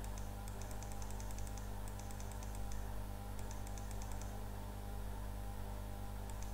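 Computer keys pressed in quick runs of light clicks, several a second, paging through presentation slides, over a steady low electrical hum.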